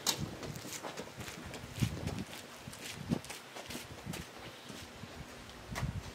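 Footsteps on a gravel yard: irregular scuffs and light clicks, spaced about a second apart.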